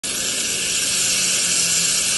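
Supercharged engine of a mini-rod pulling tractor running steadily at idle, a loud, even, hissy sound.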